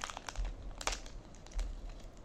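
Packaging crinkling and rustling as it is handled and opened: a run of small crackles, with a couple of dull bumps from handling.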